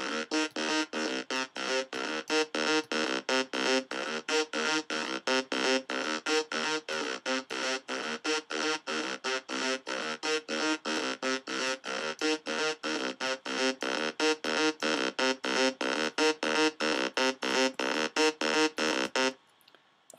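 Waldorf Blofeld synthesizer playing a looped MIDI sequence of short, evenly spaced notes, about four a second, with its chorus effect being set up. The notes stop about a second before the end.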